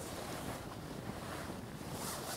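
Wood campfire burning, a steady rush of flames.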